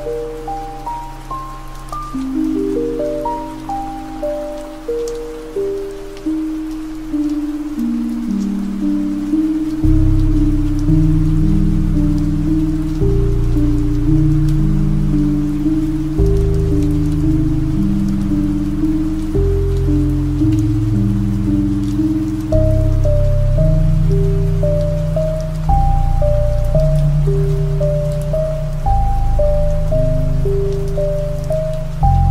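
Ambient relaxation music: a piano melody of short notes, joined about ten seconds in by deep sustained bass chords that make it louder, over a layer of rain sound.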